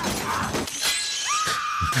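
Movie soundtrack of a violent action scene: shattering and breaking crashes. Late on, a high whine rises and then holds steady.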